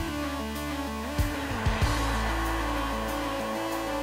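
Background music: a guitar-led instrumental with bass and a steady drum beat.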